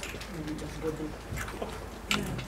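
Low, quiet voices murmuring, with a few light clicks and knocks.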